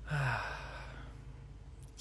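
A man's short sigh: a breathy exhale whose voice falls in pitch, lasting about half a second at the start. A faint, steady low rumble follows.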